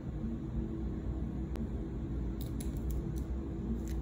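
A handheld Cricut EasyPress Mini heat press pressed and shifted against a glass candle jar, giving a few faint clicks and light handling noise over a steady low hum.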